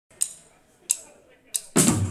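Drum-kit count-in: three sharp clicks about two-thirds of a second apart, then the full rock band comes in loudly with drums near the end.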